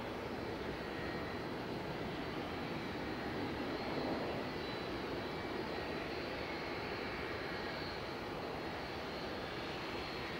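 Jet airliner engines running at an airport, a steady rumble and roar that swells slightly about four seconds in.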